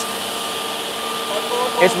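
Steady whirring hum of an industrial edge banding machine and its dust extraction running, with a faint high whine over it.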